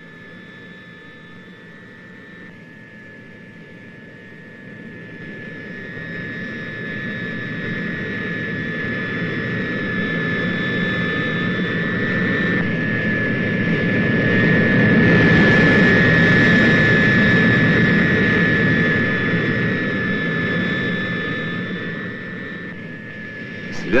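Tu-95V bomber's four turboprop engines at takeoff power: a steady high whine over a broad engine noise that swells over about ten seconds to a peak past the middle, then fades as the aircraft goes by.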